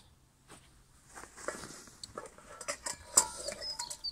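Camping gear being handled and pulled out of a rucksack: fabric rustling and light knocks, with a sharper click about three seconds in.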